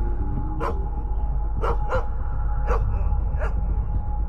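Dogs barking: about five short, sharp barks spaced through the few seconds, over a steady low musical drone.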